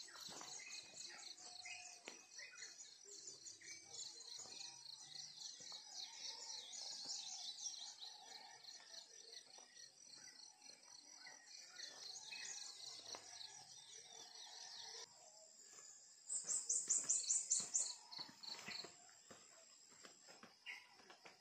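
A chorus of insects, a shrill rapidly pulsing band high in pitch, with scattered bird chirps lower down. The chorus changes abruptly about 15 s in, and a louder high rapid pulsing call sounds for under two seconds soon after.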